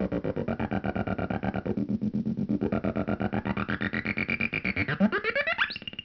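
Homemade optical synthesizer tone chopped by its LFO into rapid even pulses, about eight a second, while its low-pass filter sweeps the sound darker and brighter. Near the end a sweep rises steeply in pitch as the light sensor is uncovered.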